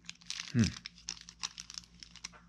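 Plastic wrapper of a block of Sargent Art Plastilina modelling clay crinkling as the block is handled and the wrap is worked open, a quick run of crackles.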